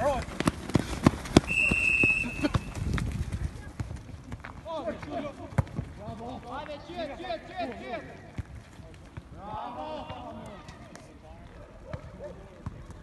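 Footballers running and playing the ball on a grass pitch: a string of thuds and footfalls over the first few seconds, with a short high steady tone about a second and a half in. Distant shouted calls between players follow for most of the rest.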